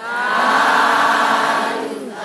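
Buddhist devotional chanting by voices in unison: one long held phrase, with a short break near the end before the next phrase begins.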